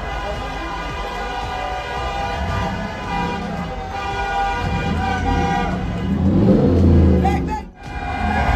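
Car horns held in long honks over crowd voices and traffic noise; the din grows louder near the end.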